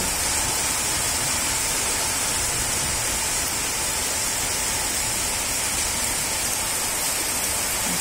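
Heavy rain pouring steadily, a dense even hiss with no let-up.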